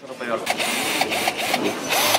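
Small cordless drill-driver (screw gun) run off its trigger, a whirring motor that starts about half a second in and comes again louder near the end.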